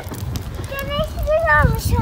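A young girl's high voice calling out in a wavering, sing-song way, over low wind buffeting the microphone.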